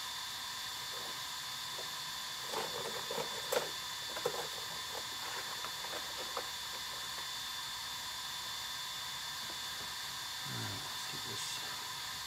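Steady background hiss with a few light clicks and taps about three to four seconds in.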